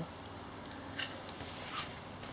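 Wooden casing of a mains-heated pencil burning in open flame, with a few faint crackles.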